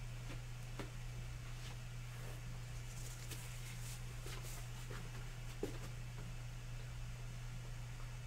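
A steady low hum, with a few faint scattered clicks and light rustles and one sharper click a little past the middle.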